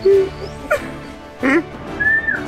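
A young man laughing in three short vocal bursts, the last sweeping sharply up in pitch, over background music.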